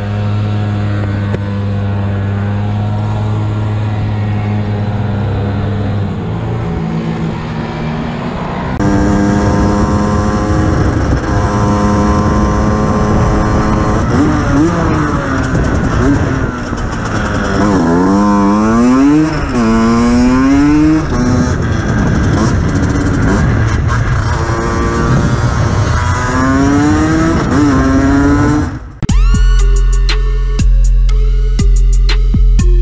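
Motorcycle engine running steadily at low revs, its note dropping a few seconds in; after a cut, a motorcycle engine revving up and down several times. Music with a beat starts near the end.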